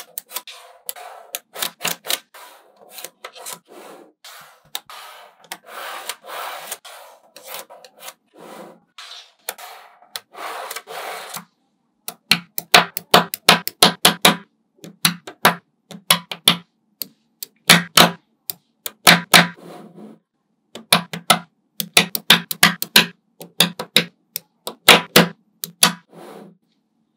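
Small neodymium magnetic balls clicking and snapping together as rows of them are set onto a slab, with rubbing, rattling rolls between the clicks. After a short break about eleven seconds in, the clicks come louder and sharper in quick clusters.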